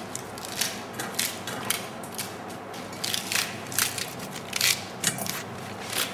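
Dry, crisp romaine lettuce leaves being torn by hand: a quick, irregular series of crackling rips.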